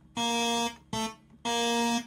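Electronic keyboard sounding the black key between A and B (A sharp / B flat) three times at the same pitch: a long note, a short one, then another long one, each held at an even level and cut off cleanly.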